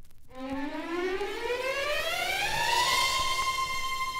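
Opening of a vinyl 45 record: a single sustained electronic tone slides up about two octaves over two and a half seconds, then holds steady, over faint record surface crackle at the start.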